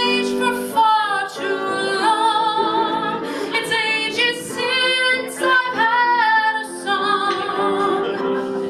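A woman singing a musical-theatre solo into a microphone, holding long notes with a wavering vibrato.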